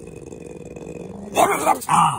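French bulldog giving a low, rumbling growl that builds, then breaking into a short burst of loud barks about a second and a half in.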